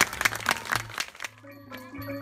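Scattered applause that dies away just over a second in, then a Thai classical ensemble starts playing, led by ranat, the Thai wooden xylophones, struck with mallets.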